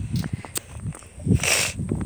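Footsteps on a brick pavement: irregular scuffs and light knocks, with a short scraping hiss about one and a half seconds in, over a low rumble of handling or wind on the microphone.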